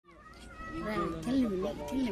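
A person's voice making wordless sounds, its pitch sliding up and down, beginning about half a second in.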